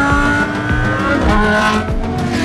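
Racing car engines at full speed on a long straight. The engine note climbs gently, then drops in pitch partway through, like a gear change.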